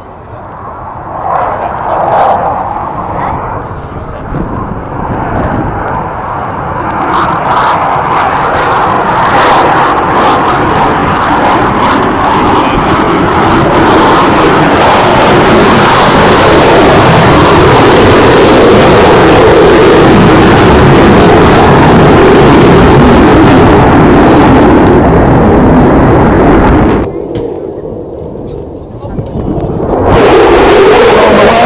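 F-16 fighter jet passing low and climbing away, its engine noise building over several seconds to a loud, steady rush. The sound cuts off suddenly near the end.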